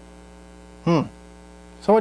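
Steady low electrical mains hum on the recording, with a brief voiced sound about a second in and a man starting to speak near the end.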